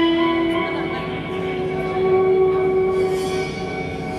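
Live electric guitar and drum kit: the guitar holds one long sustained note, then moves to a slightly higher note held for a couple of seconds, with light cymbal and drum strokes underneath.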